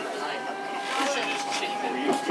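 Passengers chattering inside a moving tram, over the tram's running noise, with a steady high tone joining about a second in.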